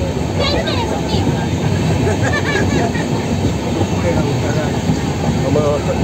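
Steady low running noise of a moving train, heard from inside the carriage, with people talking faintly in the background.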